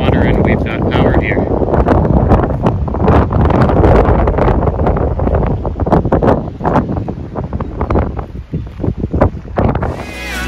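Wind buffeting the camera microphone outdoors: a loud, gusty rumble with irregular thumps, easing in the last couple of seconds.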